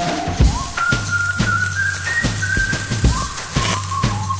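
Instrumental break in a children's song: a high, whistle-like melody of single held notes over a drum beat and bass.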